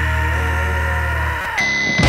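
Noise-rock song: held low bass notes and sustained chords ring out and fade, then a steady high-pitched tone sounds briefly near the end as the full band comes back in louder.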